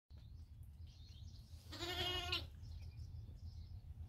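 A sheep bleating once, a single quavering call a little under a second long about two seconds in.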